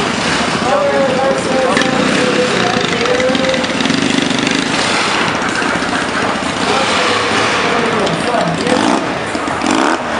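Motorcycle engine running with its pitch wavering up and down, over chatter and noise from a crowd.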